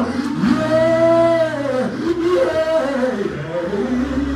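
A man's voice humming a slow hymn tune without words into a microphone, in long drawn-out notes that rise and fall, the longest held about a second in.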